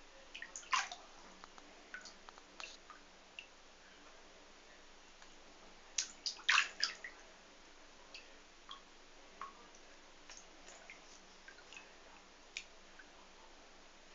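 Water dripping in a bathtub: scattered, irregular drips, with a quick run of louder ones about six seconds in.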